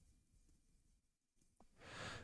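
Near silence: room tone, with a faint breath near the end before speech resumes.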